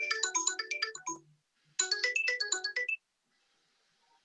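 A phone ringtone: a quick melody of bright notes played twice, each time for about a second, then it stops.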